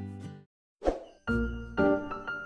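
Acoustic guitar background music fades out, then after a brief silence a single short transition sound effect plays, and new soft music with struck, ringing notes begins.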